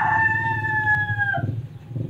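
A rooster crowing: one long held call that drops slightly in pitch at its end, about a second and a half in, over a steady low background hum.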